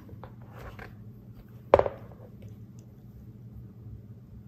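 A few faint small clicks, then one sharp knock a little under two seconds in with a short ring after it, over a low steady hum.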